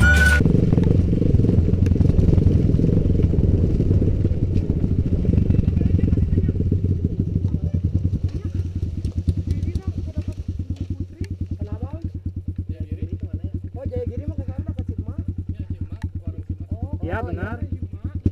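Kawasaki KLX 150 trail bike's single-cylinder four-stroke engine running while riding, then dropping back to a steady idle with a fast, even beat of firing strokes from about ten seconds in. Voices come in faintly over the idle near the end.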